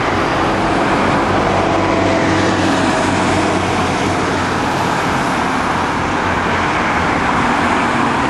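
Street traffic: a bus drives past close by, its engine humming under a steady rush of tyre and engine noise from the passing cars.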